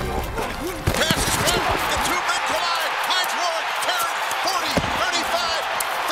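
American football game field audio: a stadium crowd's noise with scattered shouting voices and sharp thuds of players colliding, the loudest about a second in.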